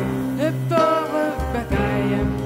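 Live band playing an instrumental passage of a jazz-rock song: keyboard, electric guitar and drums under a steady bass note, with a melody line sliding in pitch on top.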